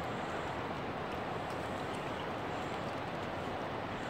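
Steady rush of flowing river water.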